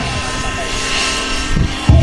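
Radio-controlled model helicopter's engine and rotors whining at a steady pitch as loud rock music briefly thins out. The music comes back with a sudden heavy hit near the end.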